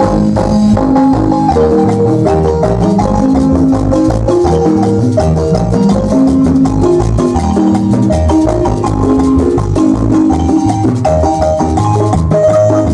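A Guatemalan marimba ensemble plays dance music, with quick mallet notes over a steady, pulsing bass line.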